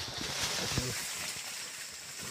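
Big male wild boar caught in a snare, thrashing in dry leaf litter and undergrowth: a burst of rustling and crashing through the first second or so, with a few knocks, then easing off.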